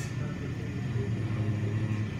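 Automatic car wash machinery running, a steady low mechanical hum with a wash of noise as the rotating cloth brushes work over a minivan.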